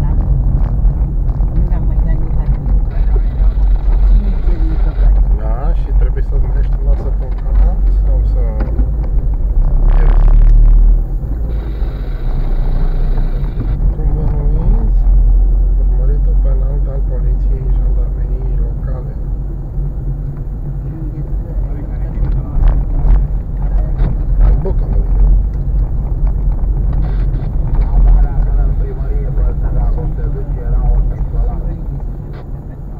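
Car driving slowly along a rough, patched lane, heard from inside the cabin: a steady low rumble of engine and tyres, louder for about a second around ten seconds in.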